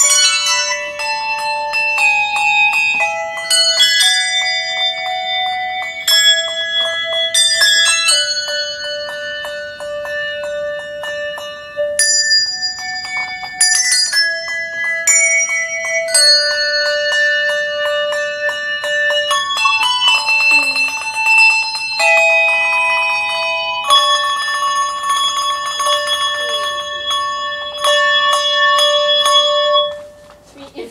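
Handbell ensemble playing a pop tune: tuned handbells rung one after another, each note ringing on with bright overtones. There are stretches of rapid, repeated ringing about two-thirds of the way through and again near the end.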